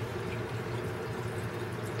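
Steady background noise with a low hum underneath; no distinct events.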